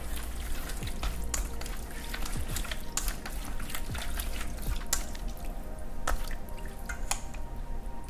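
Wooden chopsticks stirring raw salmon slices through a thick sauce in a stainless steel bowl: wet, sticky squelching with many small irregular clicks.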